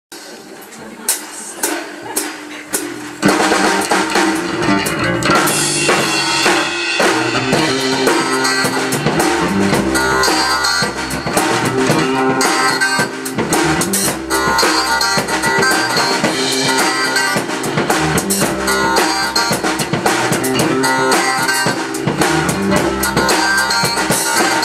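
Live band (drum kit, electric bass guitar and keyboard) playing the instrumental intro of a funk song. A few sharp drum hits in the first three seconds, then the full band comes in.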